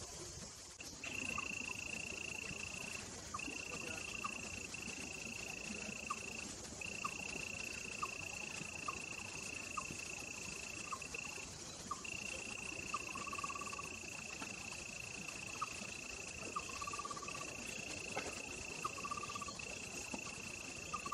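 An outdoor chorus of small calling animals. A steady high-pitched trill starts about a second in and carries on with brief breaks, over short lower chirps that repeat about once a second, some of them drawn out into longer trills in the second half.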